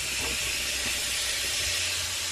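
Chicken pieces and shrimp frying in butter in a frying pan, a steady sizzling hiss.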